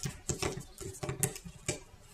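Quick, irregular light clicks and taps, about ten in two seconds, of rubber bands being worked by hand on the clear plastic pegs of a Rainbow Loom.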